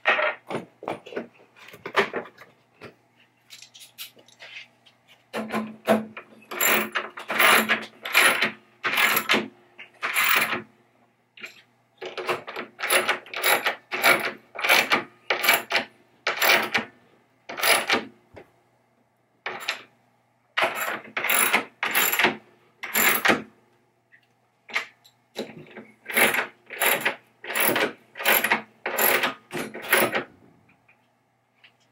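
A hand wrench ratcheting in quick repeated strokes, about two a second in runs with short pauses, as the bolts holding a pinball machine's backbox head to its cabinet are tightened snug.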